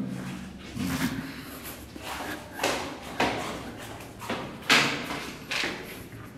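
A person's footsteps, about two steps a second, a run of short knocks that grows fainter toward the end.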